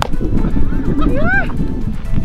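A sharp pop as a fast softball pitch hits the catcher's mitt, followed a little later by a few short rise-and-fall tones, over background music.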